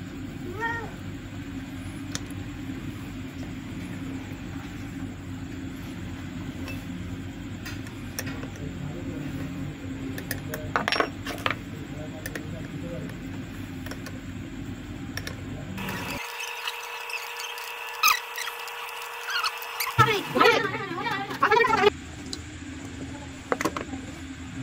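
Open-end spanner clicking and tapping on the nut and copper clamp as a new battery terminal is tightened onto the post: a few sharp metallic clicks, over a steady low hum.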